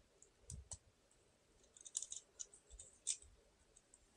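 Faint, scattered clicks of the plastic parts of a Hasbro Transformers Rise of the Beasts Voyager Optimus Prime figure as its tabs are pushed into their holes. The sharpest click comes about three seconds in.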